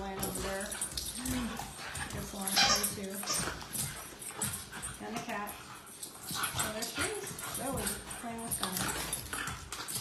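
Puppies whining and yipping as they play-wrestle, with one louder, sharper cry about two and a half seconds in.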